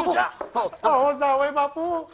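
A few sharp knocks of a wooden paddle striking about half a second in, followed by a drawn-out vocal cry.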